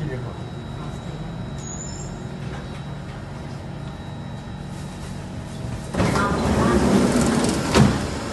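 Metro train standing at the platform with a steady low hum, then about six seconds in the train's doors and the platform screen doors slide open with a loud rush that ends in a thud as they reach the end of their travel.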